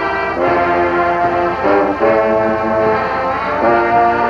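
Brass band music: slow, held chords that change every second or so.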